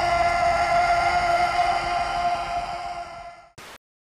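A sustained ringing tone with overtones, holding one pitch and then fading out about three seconds in. A short burst of hiss follows just after it fades.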